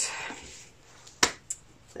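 Two sharp clicks, a loud one a little past a second in and a fainter one about a quarter second later, like small objects being handled and set down.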